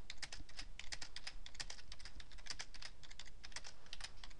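Typing on a computer keyboard: a steady run of quick keystrokes, about four to five a second, as a short phrase is typed out.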